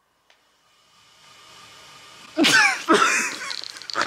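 People laughing: near silence at first, then a faint hiss that grows, and about halfway through, sudden loud bursts of laughter with squealing, falling-pitched cries.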